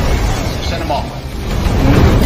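Music mixed with a voice over film action sound effects, dipping in loudness a little past the middle and swelling again near the end.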